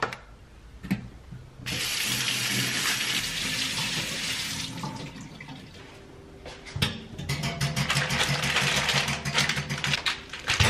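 Kitchen tap running into a stainless steel sink to rinse fruit in a mesh strainer. The water comes on about two seconds in and stops about three seconds later, then runs again from about seven seconds in, with a few knocks in it.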